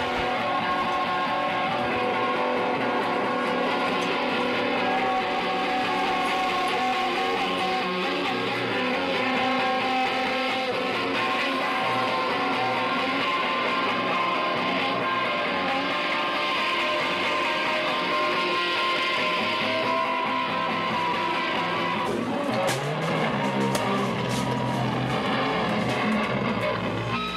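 Live garage-punk band playing loud, distorted electric guitar, recorded dense and saturated through a camcorder microphone. About three-quarters of the way through, the texture changes and a few sharp knocks cut through.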